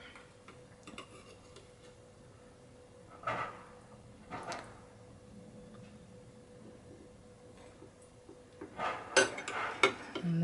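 Metal serving spoon clinking and scraping against a ceramic bowl and plate while spooning gravy: a couple of soft knocks mid-way, then a quick run of sharper clinks near the end. A faint steady hum sits underneath.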